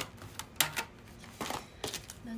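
Light, irregular clicks and taps, about six in two seconds, from fingernails tapping on a smartphone screen.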